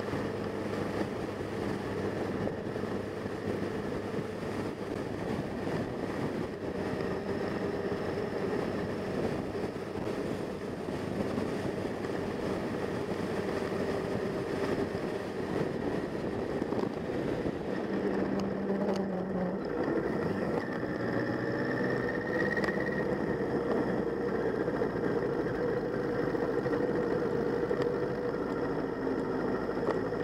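Motorcycle engine running steadily on the move, heard through an onboard camera with road and wind noise. The engine note changes about two-thirds of the way through.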